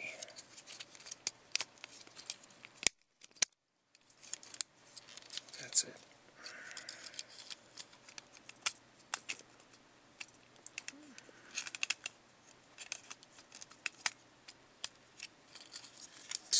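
Hard plastic clicks and snaps of a Transformers Generations Megatron action figure's joints and panels being folded and pegged into place by hand. The clicks come irregularly, some sharp and loud, and the sound drops out for about a second about three seconds in.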